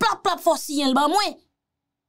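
A woman speaking for about a second and a half, then it cuts to dead silence.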